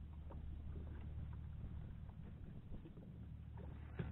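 Steady low rumble of a fishing boat on open water, with faint scattered ticks and knocks.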